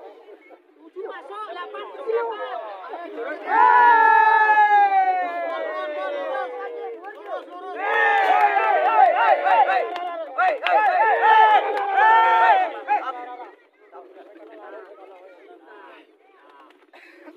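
Men shouting drawn-out calls to bring racing pigeons in to the waved hen birds: one long call falling in pitch about three and a half seconds in, then rapid wavering calls from about eight seconds to near thirteen, over crowd chatter.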